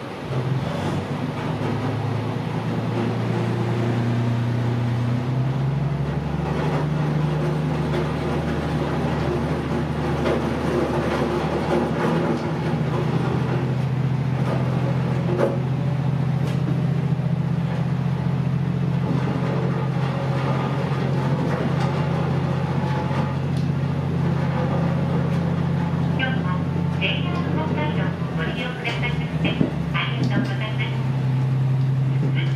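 Diesel engine of a JR Hokkaido KiHa 54 railcar heard from the driver's cab under power as the train pulls away: a steady engine drone that comes in just after the start, steps up in pitch about five seconds in and holds there as the train gathers speed. A rapid, evenly repeated high ringing joins in near the end.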